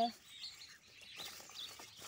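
Birds chirping faintly in the background: a few short, high calls.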